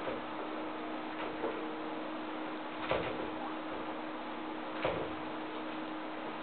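Two small dogs play-fighting on a tile floor: a handful of short knocks and scuffles, the loudest about three and five seconds in, over a steady hum and hiss.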